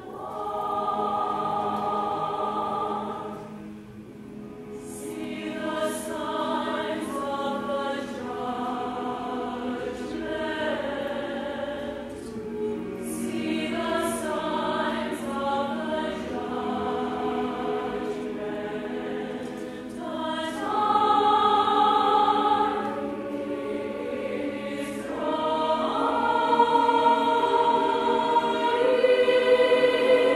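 Mixed chamber choir singing in full chords, with crisp, sharply placed 's' consonants. The sound dips briefly about four seconds in, then swells louder around two-thirds of the way through and again near the end.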